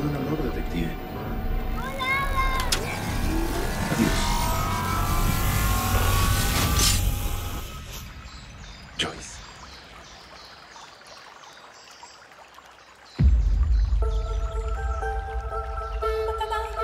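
Film soundtrack: score and sound design that swells with a rising whoosh in the first half, drops to a quieter stretch, then a sudden deep impact hit about thirteen seconds in, followed by sustained bell-like music tones.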